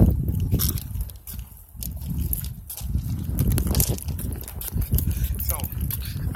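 Wind rumbling on a phone microphone while it is carried outdoors, with scattered short knocks from handling, and a few words of speech near the end.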